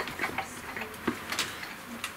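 Light, irregular clicks and taps of camera gear being handled as a camera rig is set up on a dolly.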